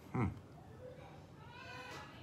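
A man's short "hmm", then a faint, high-pitched drawn-out call in the background during the second half.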